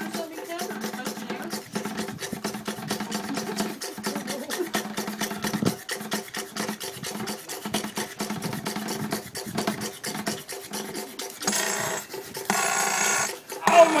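Belt-driven vacuum pump running, a rapid even ticking of its strokes over a steady hum. Near the end, two bursts of hissing air.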